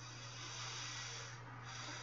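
Soft breath into a close microphone: a hiss of about a second and a half, a short dip, then another breath near the end, over a steady low hum.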